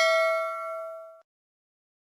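A bright bell-like 'ding' sound effect, the notification-bell chime of a subscribe-button animation, ringing and fading, then cutting off suddenly a little over a second in.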